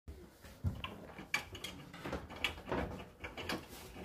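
Hotpoint NSWR843C washing machine running partway through its cycle: a low hum with several irregular clicks and knocks.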